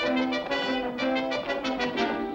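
Orchestral background score led by brass. It comes in sharply with a new chord, then plays a quick run of short, accented notes.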